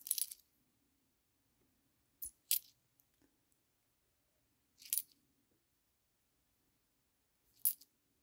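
Hong Kong ten-cent coins clinking against one another as they are handled and set down one by one. There are a few short clicks: one at the start, a quick pair about two and a half seconds in, one near five seconds, and one near the end.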